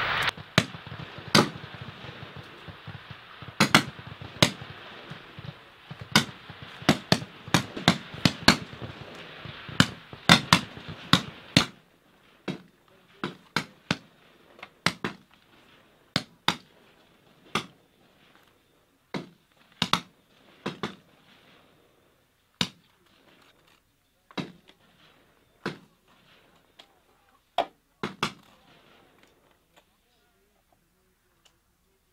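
Rifle shots cracking irregularly, several a second at times, over steady background noise. About twelve seconds in the background drops away, and isolated sharp clicks and cracks continue at roughly one a second.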